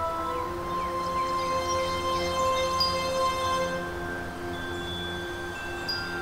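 Metal bell wind chime ringing: several small bells sound long, overlapping notes at different pitches, with light high tinkles between them.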